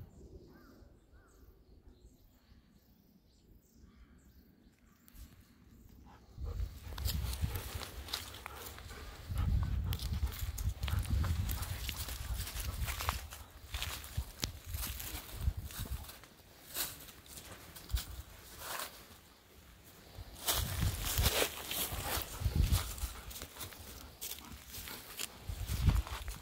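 Footsteps crunching through dry fallen leaves on a stone path, a person walking along with a golden retriever. The sound starts about six seconds in, after a quiet opening. It is an uneven run of leaf crackles and low thuds of steps.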